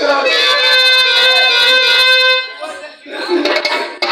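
Electronic keyboard holding one loud sustained reedy chord for about two and a half seconds, then fading; a voice comes in over it near the end.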